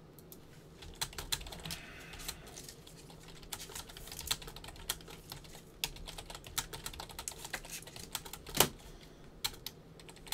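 Computer keyboard being typed on in short, irregular runs of light key clicks, fairly quiet, with one louder knock near the end.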